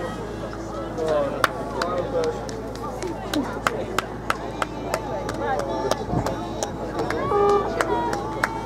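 Scattered hand-clapping from a few spectators, sharp separate claps coming two or three a second from about a second and a half in, over the voices of people talking and calling nearby.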